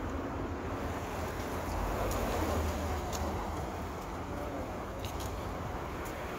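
City street ambience: a steady low rumble of traffic noise, swelling slightly two to three seconds in, with a few faint clicks.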